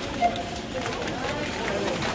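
Faint, indistinct voices over the general murmur of a shop, with no clear nearby speech.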